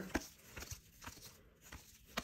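Trading cards being flipped through by hand, card edges giving a handful of faint, irregularly spaced clicks and taps.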